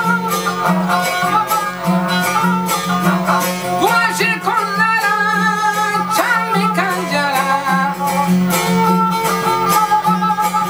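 Balochi folk duet of a bowed suroz fiddle and a strummed dambura lute: the dambura keeps a steady, pulsing low drone while the suroz plays the melody. In the middle a man's voice sings along, with sliding notes.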